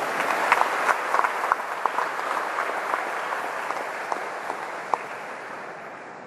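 A congregation applauding: a dense round of clapping with sharp individual claps standing out, slowly dying away toward the end.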